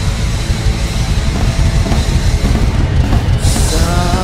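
Hard rock band playing live, with the drum kit loud throughout and a cymbal crash near the end.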